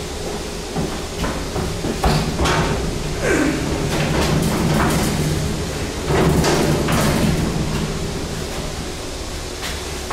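A freight elevator's steel mesh car gate being raised by hand, rattling and clanking with a knock about two seconds in. From about six seconds in, louder scraping and clanking as the heavy bi-parting hoistway doors are pushed open by hand.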